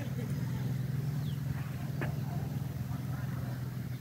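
Motorbike engine running at a steady cruise with road noise as it rides along, a constant low hum.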